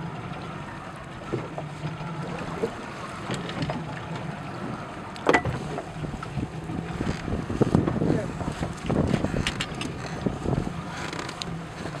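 Steady low hum of a small fishing boat's engine, with wind and water noise around the hull. Scattered knocks and clatter on board include a sharp click about five seconds in, and they grow busier in the second half.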